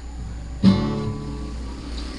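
Acoustic guitar: a single chord strummed sharply about half a second in and left ringing.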